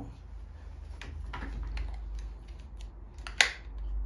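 Small mechanical clicks and rattles from handling a BSA Ultra CLX PCP air rifle as its bolt and clip-in single-shot pellet loader are worked, with one sharp, louder click a little over three seconds in.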